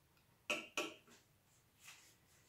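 A metal spoon scraping briefly in a bowl of fried onions, twice in quick succession about half a second in, then a fainter touch near the end.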